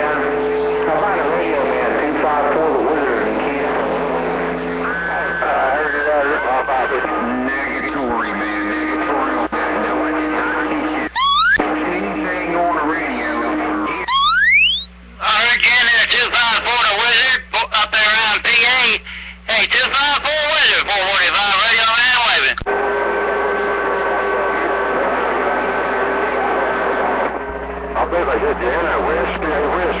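CB radio receiving distant skip stations: several voices are garbled and overlapping, with steady heterodyne whistles under them. Two rising whistle sweeps come at about 11 and 14 seconds in, and a louder signal takes over from about 15 to 22 seconds in.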